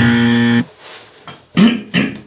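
A man's voice holding one steady note for just over half a second, cutting off abruptly, then breaking into a short laugh near the end.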